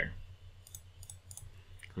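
A series of faint computer mouse clicks while working in an app dialog.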